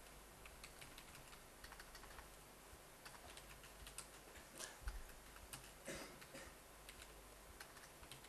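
Faint computer keyboard typing: irregular, scattered keystrokes as a short line of text is entered. A soft low thump comes about five seconds in.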